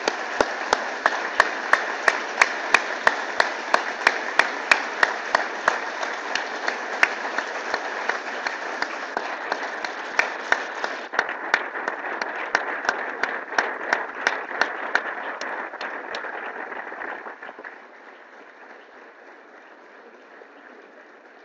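Audience applauding, with close, sharp claps standing out about three times a second over the crowd's clapping. The applause dies away near the end.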